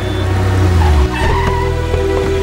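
A car pulling up and braking, its low engine rumble cutting off about a second in, over steady background film music.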